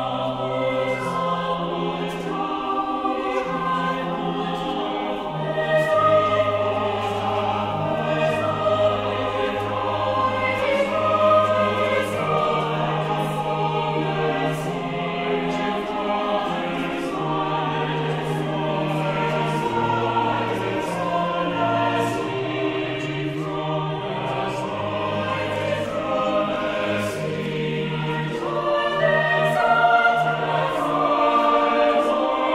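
A mixed choir of men's and women's voices singing, holding long sustained chords.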